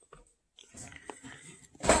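Faint chewing during a meal, with a light click about a second in, likely a spoon against the plate.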